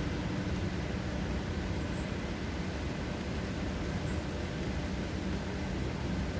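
Steady outdoor background noise with a low rumble, even throughout, with no distinct events.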